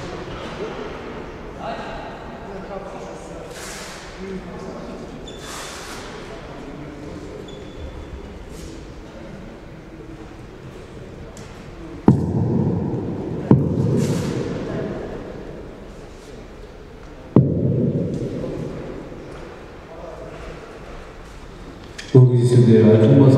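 Three sudden heavy thuds, each followed by a low rumble that dies away over a couple of seconds in a large echoing hall. The first two come close together and the third about four seconds later, over a background murmur of distant voices.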